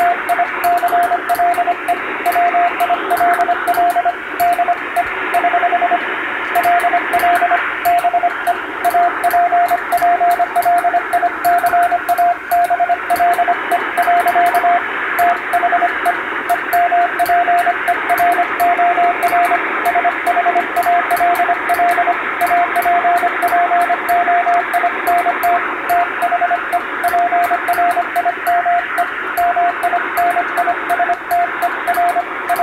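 Morse code (CW) on a shortwave receiver: a single steady tone keyed on and off in rapid dots and dashes, half-buried in a continuous wash of static and hiss. The code spells out English plain-language text.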